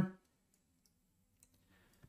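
The end of a spoken word, then near silence broken by two faint clicks, one about one and a half seconds in and one near the end.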